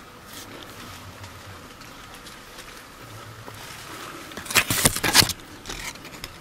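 Fig leaves and twigs rustling close to the microphone in a few short bursts about four and a half seconds in, after a stretch of faint background noise.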